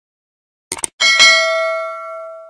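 A quick double click, then a bell-like notification ding about a second in that rings on and fades away. It is the sound effect of an animated subscribe button and notification bell.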